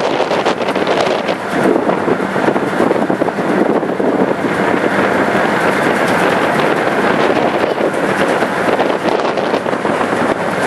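Wind buffeting the microphone on an open ferry deck: a loud, steady rushing noise, with a faint steady hum of the ferry's engine underneath.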